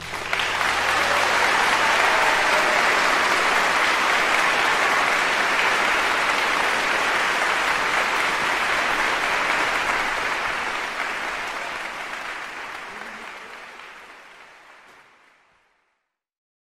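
Audience applause that swells within the first second, holds steady, then fades out over the last five seconds.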